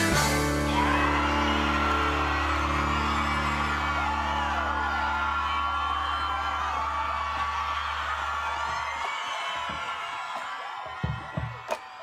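A live band's final held chord rings out and fades away over about nine seconds, while an audience cheers and whoops; the cheering thins out as well, and a couple of sharp knocks come near the end.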